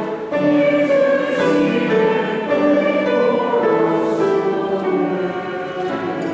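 Voices singing a church hymn in long held notes that move from chord to chord.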